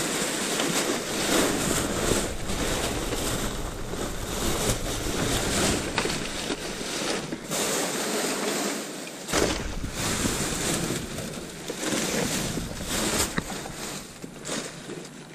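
Plastic trash bags rustling and crinkling continuously as gloved hands pull and shift them about, with irregular louder crackles.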